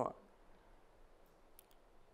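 The tail of a spoken sentence at the very start, then near silence: room tone with a couple of faint small clicks about a second and a half in.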